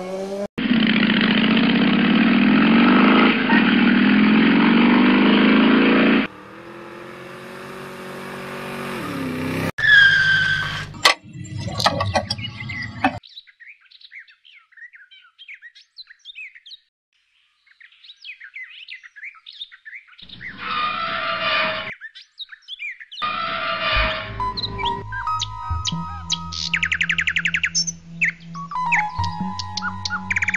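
A motorcycle engine revving loudly, its pitch rising, for about six seconds, then running quieter until about ten seconds in. Faint bird chirps follow, and in the last several seconds music with steady held notes comes in.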